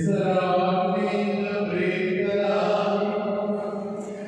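Liturgical chant at a Catholic Mass, sung in long held notes that move slowly in pitch and break off near the end.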